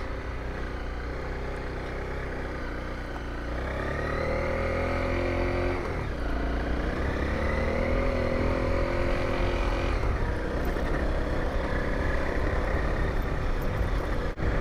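Honda CRF250L single-cylinder motorcycle engine under way through a sandy dry-riverbed crossing, over a steady low rumble. Its note rises about four seconds in, breaks briefly near six seconds as if changing gear, climbs again and fades out around ten seconds in.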